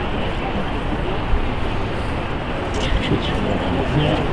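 Steady city street noise: a low traffic rumble with indistinct chatter of people standing around.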